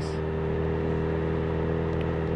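Honda CBR sport bike's inline-four engine running at a steady cruise, its note holding level with no revving, under a haze of wind and road noise at a helmet-mounted microphone.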